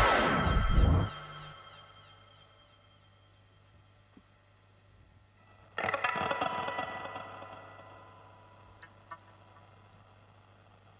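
A rock band ends a song on a final hit that rings out and dies away over a second or two, leaving a low amplifier hum. About six seconds in, an electric guitar strums a single chord that rings and fades, followed by two sharp clicks.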